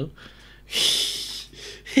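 A person sighing: one breathy exhale into the microphone lasting well under a second. A short laugh starts right at the end.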